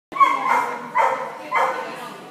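A dog barking three times, sharp barks about two-thirds of a second apart, echoing in a large hall.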